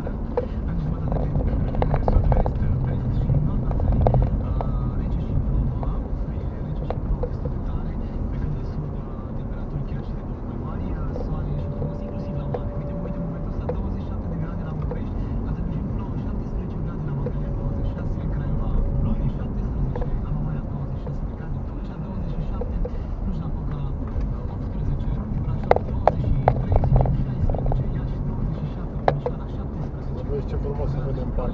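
Inside a moving car: steady engine and road rumble while driving, with a cluster of sharp knocks near the end and one more just before it ends.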